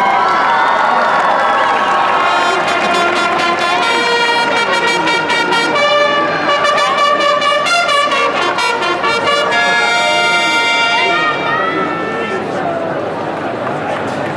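Several chiarine, long valveless herald trumpets, play a fanfare with runs of quickly repeated notes over crowd noise. The fanfare starts about two seconds in and dies away near the end.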